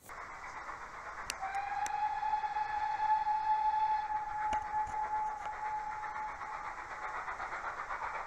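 Steam locomotive whistle blowing one long steady note of about five seconds over a continuous rushing noise of the engine.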